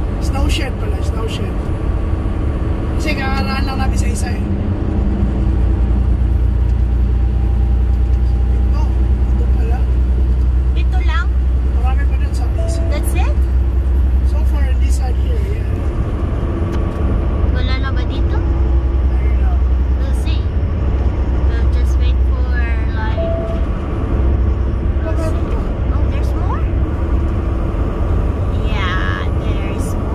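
Steady low drone of a semi-truck's engine and road noise heard inside the cab while driving, with short stretches of talking over it now and then.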